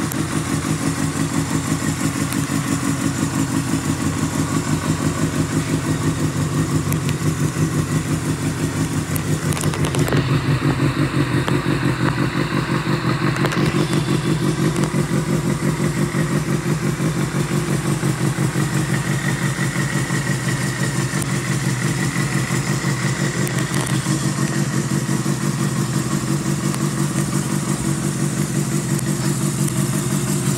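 Kawasaki Balius 250 cc liquid-cooled inline-four engine running steadily at idle, with an even, rapid exhaust pulse. It gets a little louder around ten seconds in.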